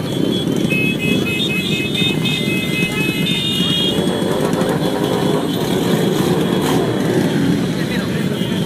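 A large crowd of motorcycles idling together in a street, their engines running as a dense, steady rumble, with voices mixed in. A run of short high-pitched tones sounds through roughly the first half.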